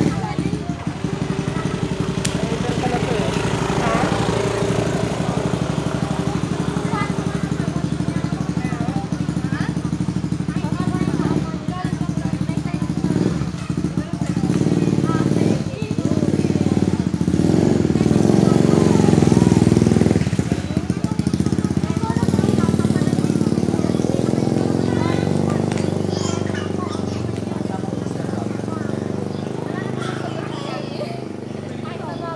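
Motorcycle engine idling steadily close by, growing a little louder past the middle, with people talking in the background.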